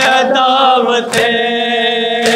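A lone male voice chanting a devotional verse, holding long, steady notes with a short break about a second in.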